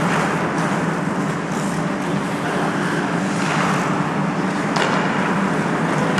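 Steady hum and hiss of an indoor ice rink during hockey play, with hockey skate blades scraping across the ice in swells and a faint sharp click about five seconds in.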